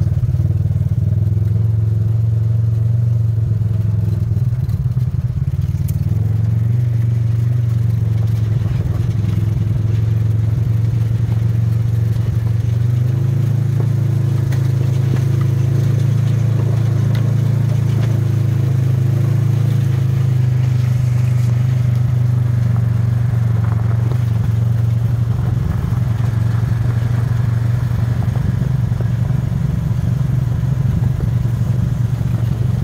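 A side-by-side UTV's engine running steadily at low speed on a dirt road. Its note steps up slightly about thirteen seconds in.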